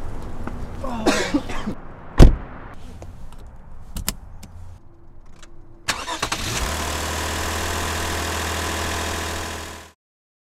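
A car door slams shut, the loudest sound, about two seconds in, followed by a few clicks. Near the middle the car's engine starts and settles into a steady idle, then fades out at the end.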